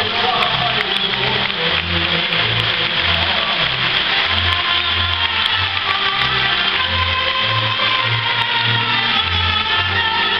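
Live folk band music: accordions and a double bass keeping a steady bass beat, with a clarinet-type woodwind playing the lead in the second half.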